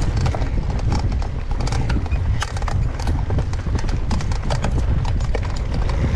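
Mountain bike rolling fast down a dirt singletrack, heard from the bike itself: a steady low rumble of tyres on the ground and wind, with frequent sharp clicks and rattles from the bike over stones and roots.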